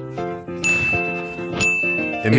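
A bright, high ding, struck twice about a second apart, each ringing on after the strike, over light background music.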